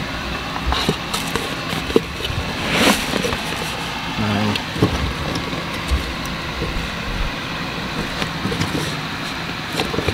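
Hands working plastic fuel-line quick-connectors on a car's in-tank fuel pump module: scattered small clicks and handling noises over a steady background hum, with a short hiss about three seconds in.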